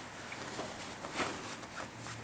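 Faint rustling and a few soft bumps of bodies and cloth shifting on a grappling mat, the loudest about a second in.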